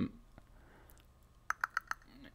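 A quick run of five sharp clicks at the computer about a second and a half in, after a near-quiet stretch of room tone.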